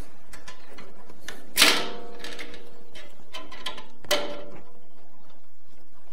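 A steel bandsaw blade is being handled onto the wheels and between the guides of a Delta 14-inch bandsaw. There are soft clicks and two metallic knocks, one about a second and a half in and one about four seconds in, and each rings briefly.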